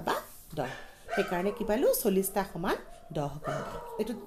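A woman's voice speaking, broken into short phrases with rises and falls in pitch.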